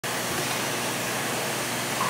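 Steady, even rushing background noise of a laundromat, with no distinct knocks or tones.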